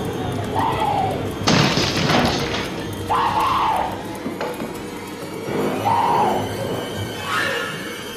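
An axe hitting a wooden door and splintering it, two heavy blows about six seconds apart, one about a second and a half in and one near the end. Between them a woman screams in high wavering cries.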